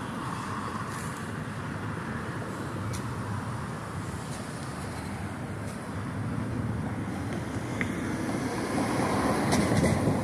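Steady low outdoor rumble, growing slightly louder over the last few seconds.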